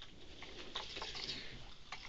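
Faint, scattered small clicks and light rustling as ferrets move about and paw at a cloth bedspread.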